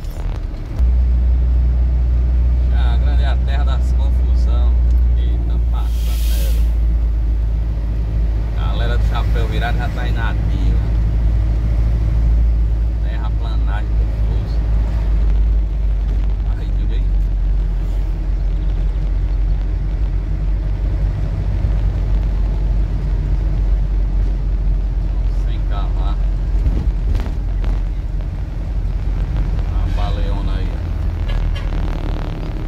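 Truck engine droning steadily inside the cab while driving, with a short hiss about six seconds in.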